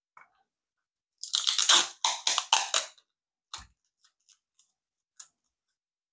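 Tape pulled off a roll in a handheld tape dispenser, a crackling rip lasting a little under two seconds, followed by one sharp knock and a few faint clicks.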